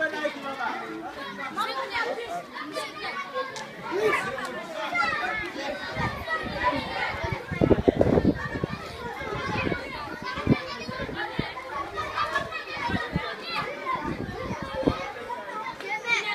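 A crowd of schoolchildren chattering and calling out all at once, many voices overlapping. A cluster of thumps about halfway through is the loudest moment.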